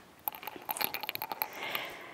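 Quiet rustling with a quick run of small clicks and scuffs as a barefoot person rises from a squat to standing on a yoga mat: clothing and feet moving on the mat, with a soft hiss near the end.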